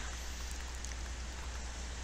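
Steady background hiss with a low, constant hum underneath: the recording's microphone noise floor with no other sound standing out.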